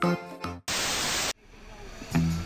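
Background music with a steady beat, cut by a burst of static-like hiss about two-thirds of a second long that starts and stops abruptly. It is an edited transition sound marking a cut between clips.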